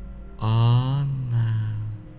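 A deep voice chanting a long held syllable at a steady low pitch, mantra-style, sounded twice in a row starting about half a second in, over faint background music.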